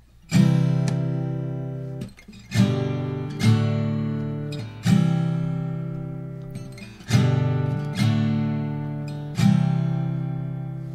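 Taylor GS Mini acoustic guitar being strummed: seven chords in an uneven rhythm, each struck once and left to ring and fade.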